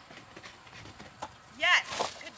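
Fairly quiet outdoor stretch with a few faint ticks and a click, then near the end a short, loud shouted call from the dog's handler, falling in pitch.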